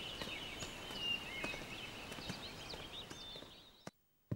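Small birds chirping and twittering over a steady outdoor background hiss, fading out near the end.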